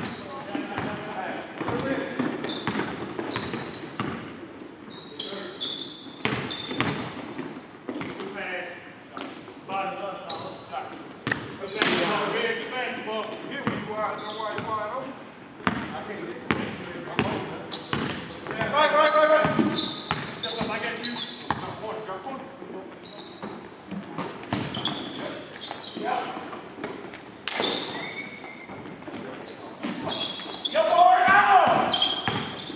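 Basketball being dribbled and bounced on a hardwood gym floor, with sneakers squeaking and players shouting indistinctly, all ringing in the gym's echo. The voices are loudest about twelve seconds in and again about nineteen seconds in.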